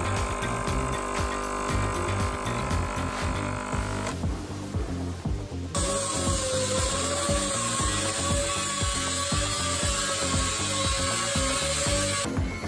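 Background music with a steady beat throughout. For the first few seconds a coffee machine runs as it pours into a mug, and from about six seconds in an air-powered cutting tool whines steadily as it cuts metal under the car, throwing sparks.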